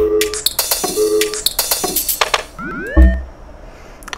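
A home-made UK dance beat playing back from MPC Essentials software. It has clicky drum-machine hits and a short repeated synth tone, then a rising synth swoop into a deep bass hit about three seconds in, after which the beat dies away.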